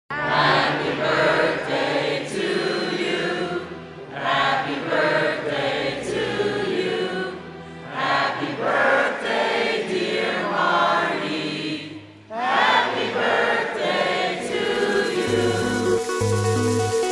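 A large crowd of mixed voices singing together in unison, in four phrases with short breaths between them. Near the end electronic dance music with a pulsing bass beat comes in.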